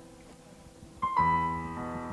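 Soft background piano music: held notes fade away, then a new chord is struck about a second in and rings on.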